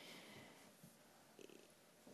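Near silence: room tone, with a few faint ticks about one and a half seconds in.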